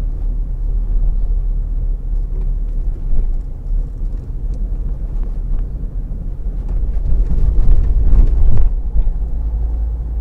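Car's road and engine noise heard from inside the cabin: a steady low rumble that grows louder for a couple of seconds near the end as the tyres run over a railway level crossing.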